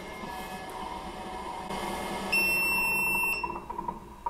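Creality UW-01 wash and cure station running in cure mode, its fans and turntable motor humming steadily. A little past two seconds in, a single high electronic beep sounds for about a second as the cure timer runs out.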